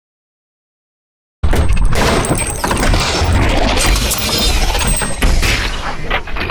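Silence for about a second and a half, then a sudden, loud start of dense sci-fi sound-design effects for a motion-graphics intro, noisy and crackling over a heavy low rumble, which runs on steadily.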